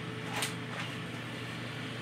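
Faint steady background hum and hiss of room tone, with one brief faint sound about half a second in.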